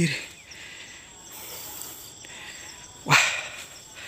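Insects chirring steadily in the background at a high pitch, with a still higher buzz that comes in for about a second mid-way; a man's short exclamation of "wah" near the end.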